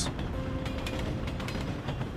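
Passenger train running on jointed track, its wheels rumbling and clicking over the rail expansion gaps (temperature seams).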